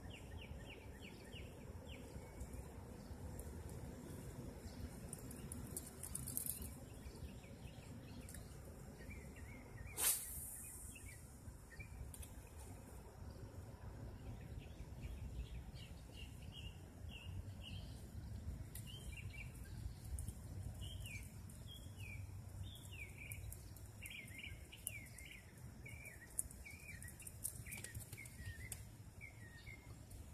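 Small birds chirping over and over in short falling notes, more often in the second half, over a steady low outdoor background noise. One sharp click about ten seconds in.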